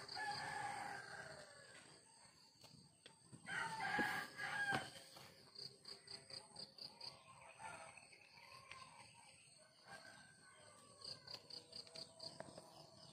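A rooster crowing: one call at the start and a louder one about four seconds in, followed by softer chicken calls.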